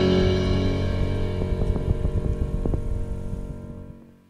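Background music fading out, its sustained tones dying away to near silence over about four seconds.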